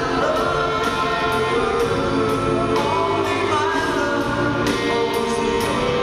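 Live rock band performance: a male singer holds a sung melody over electric guitar chords, with a steady beat.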